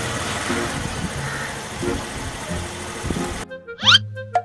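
Background music over the noise of a motor scooter running on the street. About three and a half seconds in, the scooter noise cuts off and only the music remains, with a quick rising whistle.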